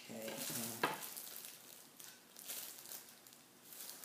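Thin plastic disposable gloves crinkling as gloved hands rub together and handle things, in several short rustling bursts. A brief wordless vocal sound comes in the first second.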